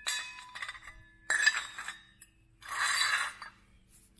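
Steel cultivator shovels clinking against each other as they are handled side by side: two sharp metallic knocks with a ringing tone, about a second apart, then a short rasp near the end.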